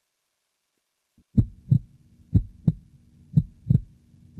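Heartbeat sound, three lub-dub beats about a second apart, starting after about a second of silence, over a faint steady low hum.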